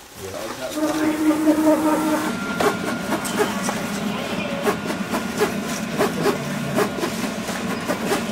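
Titan 3 vinyl cutter running a cutting job on black vinyl. Its motors whine in steady tones at first, then a rapid, irregular run of clicks and ticks follows as the blade carriage and rollers shuttle back and forth.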